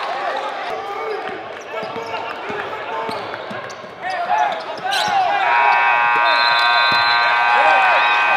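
Basketball game sounds on a hardwood gym court: sneakers squeak in quick short chirps and the ball bounces, over a murmur of voices. About five seconds in there is a sharp bang. Just after it a steady, held multi-note tone comes in and lasts to the end.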